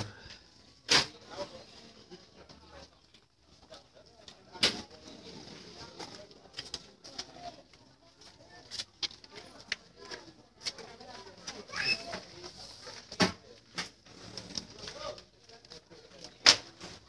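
Scattered sharp knocks, about a dozen at irregular intervals, from men rigging the speaker rack on top of a sound-system truck, over low crowd chatter.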